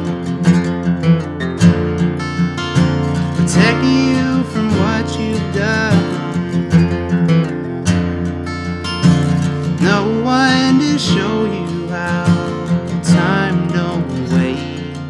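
Acoustic guitar strummed steadily under a man's singing voice, which holds long notes that slide in pitch.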